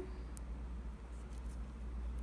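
Faint handling of beadwork: a few soft clicks as glass seed beads and a fine beading needle are worked through with the fingers, over a low steady hum.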